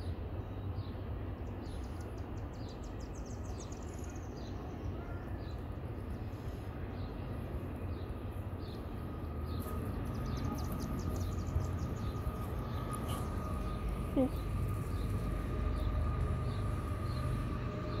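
Outdoor background: a steady low rumble with faint, quickly repeated high bird chirps, and a faint steady hum that comes in about halfway through.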